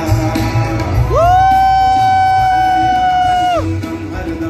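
Live band music on a stadium stage, heard from the stands. About a second in, a long high note slides up and holds steady for over two seconds before dropping away, over the band and crowd noise.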